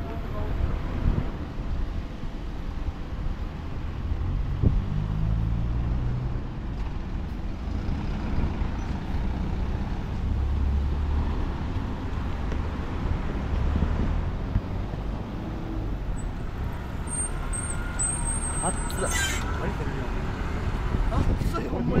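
Road traffic at a city intersection: car and truck engines running and passing, a steady low rumble with tyre noise. A thin high-pitched squeal rises briefly about three-quarters of the way through.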